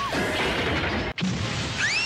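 Animated-film sound effect of stone rubble and wooden debris crashing down around falling bodies. About a second in it cuts to a different rushing noise that ends in a short rising squeal.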